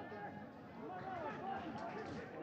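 Faint, scattered voices of footballers calling out on the pitch, heard over low field-side ambience in a stadium with no crowd noise.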